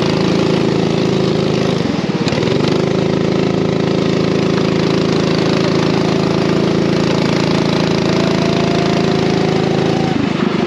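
Racing kart engine running at speed, heard onboard: its note dips briefly about two seconds in as the kart slows through a corner, then holds steady and climbs slowly near the end as the kart accelerates.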